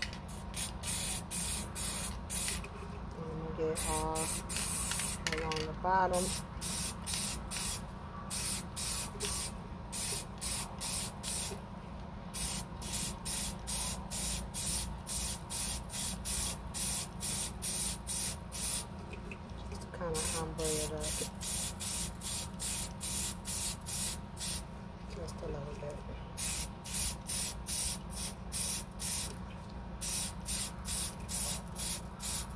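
Aerosol spray paint can hissing in short, repeated bursts, about two a second, with a few brief pauses between runs.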